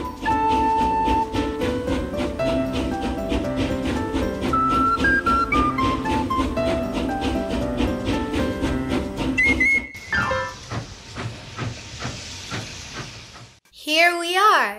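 Bright plucked-string background music for about ten seconds, then a cartoon steam-train sound effect. It starts with a short whistle, followed by hissing steam and rhythmic chuffing that stops shortly before the end.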